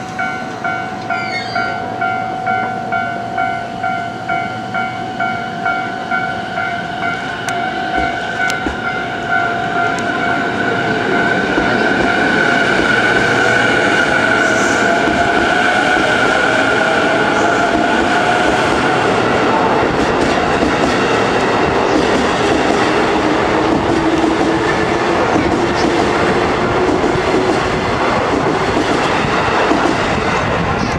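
JR East E233-7000 series electric train pulling away, its motors whining upward in pitch as it gathers speed, with wheel and rail noise growing as the cars pass close by. A level-crossing bell rings in a steady beat through roughly the first ten seconds.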